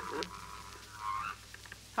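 A creaking door sound effect as the closet door opens: one drawn-out, wavering squeak lasting about a second, followed by a few faint clicks.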